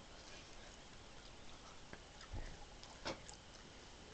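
Near silence: quiet room tone with a soft low thump a little after two seconds in and a short faint noise about a second later.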